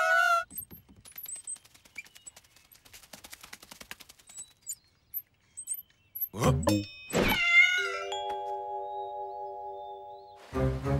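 Cartoon soundtrack. A wavering, high-pitched character vocalization cuts off about half a second in, followed by sparse faint ticks and clicks. Past the middle come a couple of thumps and a short wavering cartoon cry, then a held musical chord that slowly fades.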